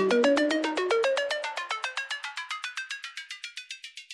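Electronic dance music outro: a fast synth line of short, bright repeated notes, about eight a second. The bass drops out and the sound thins steadily toward the treble as a rising filter sweeps it away, fading out.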